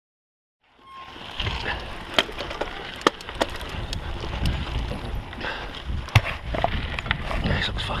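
Kona Kula Deluxe mountain bike descending a rough dirt trail, heard close up from a bar-mounted camera: a steady rumble of tyres on loose dirt, with frequent sharp clicks and knocks as the bike rattles over bumps. The sound comes in about a second in, after a moment of silence.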